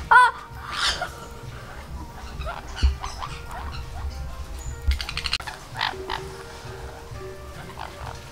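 Sun conures calling: one loud, arching squawk right at the start, then harsher chattering calls around five seconds in.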